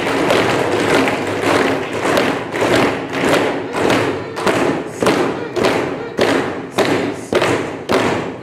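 A hall of council members applauding in unison: rhythmic thumps about twice a second over a haze of voices.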